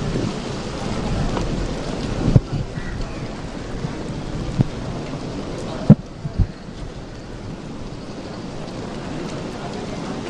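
Steady hiss of rain, broken by a few sharp, low thumps; the loudest comes about six seconds in, followed closely by another.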